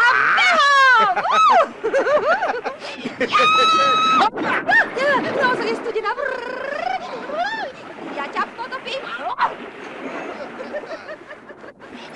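Several voices shrieking, squealing and laughing in play, with one long high held scream a few seconds in; the voices grow quieter in the second half.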